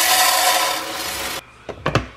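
Dry rice pouring from a bag into a clear plastic storage canister: a steady hiss of grains for about a second and a half that stops suddenly, followed by a few sharp clicks near the end as the canister's push-button lid goes on.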